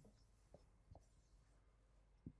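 Faint sound of a marker writing on a whiteboard, with two small taps about half a second and a second in.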